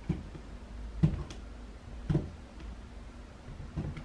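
Fingernails picking and scratching at adhesive tape on a laptop LCD panel, giving a few short sharp clicks about a second apart.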